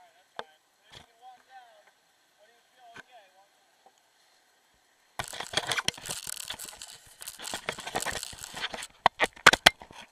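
Handling noise on a body-worn action camera. About five seconds in, a loud crackling, scraping rub starts suddenly, then it breaks into several sharp knocks near the end.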